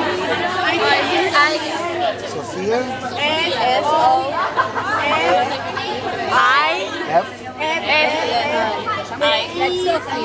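Several people chattering and talking over one another at close range, with no other distinct sound.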